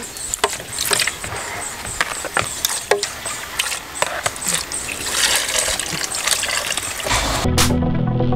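Irregular clatters, knocks and scrapes of a plastic spoon against a plastic bowl and blender jar as chiles are scooped and poured into the blender. Background music comes in near the end.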